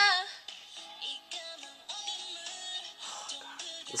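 A woman singing a slow song, played from a phone's live stream: a loud held note with vibrato ends just at the start, then softer sung phrases follow.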